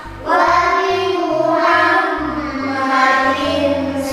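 A song sung by children's voices over an instrumental backing with a rhythmic bass line, with a brief break in the singing just at the start.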